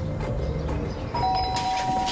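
Doorbell chime ringing once about halfway in: two clear tones sounding almost together and ringing on for a second or more.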